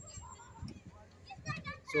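Faint voices of people talking in the distance over low outdoor background noise, a few short snatches just before the end.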